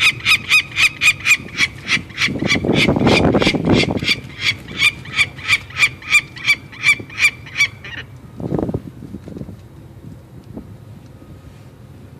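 Peregrine falcon chick calling while it is handled for banding: a rapid run of harsh, high calls at about three or four a second that stops abruptly about eight seconds in. A low rushing noise swells under the calls about two to four seconds in.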